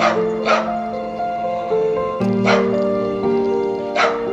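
A dog barking at a cat: three short barks, at the start, half a second later and again about two and a half seconds in, over background music.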